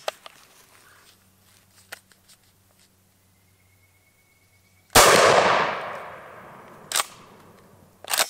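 A single 12-gauge shot from a Benelli Super Nova pump shotgun with a 28-inch barrel, fired about five seconds in. The blast rings out and fades over about two seconds, and a single sharp click follows about two seconds after it.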